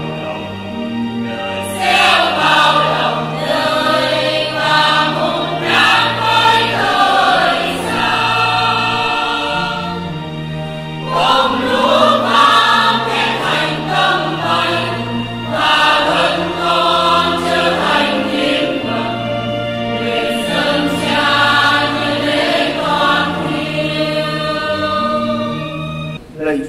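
Church choir of mostly women's voices singing the offertory hymn of a Catholic Mass, in phrases over a low accompaniment that moves in steady steps.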